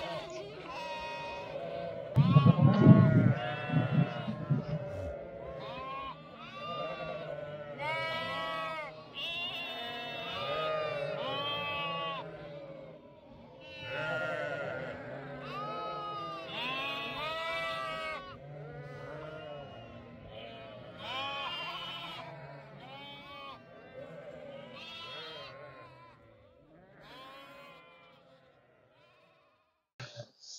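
A flock of ewes and lambs bleating over and over, many calls overlapping. These are mothers and lambs calling to find each other for suckling, and the calling dies away near the end as they pair up. There is a brief loud low rumble about two seconds in.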